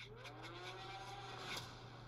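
Film-trailer sound effect of a seismometer needle scraping: a faint, drawn-out tone that rises and then falls in pitch, with a short scratch about a second and a half in.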